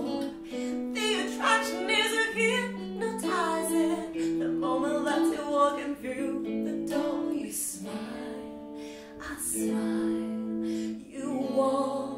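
A woman singing a slow melody over guitar accompaniment. The voice drops out for a few seconds past the middle while the guitar carries on, then returns near the end.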